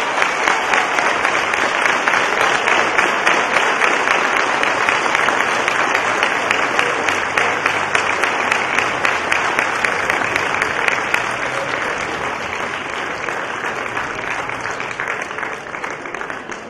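Crowd applauding: a long, sustained round of hand-clapping that eases off slightly toward the end.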